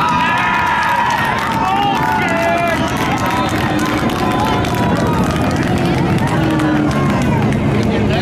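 Several IMCA Sport Compact race cars' four-cylinder engines running at low speed, revving up and down as the cars roll slowly past, over a background of voices.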